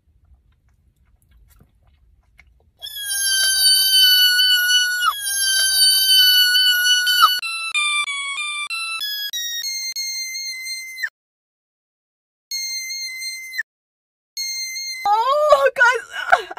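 About three seconds of near silence, then a shrill electronic-sounding tone melody like a ringtone. It plays two long held notes, then a quick run of short notes stepping down and then up in pitch, then two short notes separated by brief silences. A distorted, pitch-bending voice cuts in about a second before the end.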